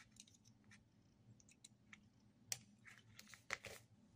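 Faint handling noise: light clicks and rustles as a circuit board and its wires are moved and set down on cardboard, with the sharpest click about two and a half seconds in and a short run of clicks near the end.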